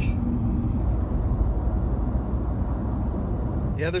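Steady low rumble of a car's engine and road noise, heard from inside the cabin in slow highway traffic.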